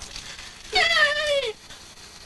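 A single high-pitched, wavering meow-like call lasting under a second, dropping in pitch at its end.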